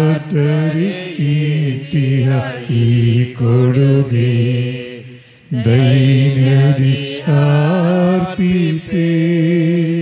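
A man singing a slow, chant-like hymn, holding long steady notes in phrases with short breaks between them.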